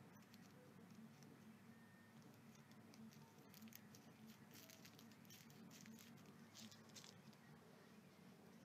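Near silence: room tone with a faint steady low hum and a scatter of faint, short clicks and rustles in the middle of the stretch.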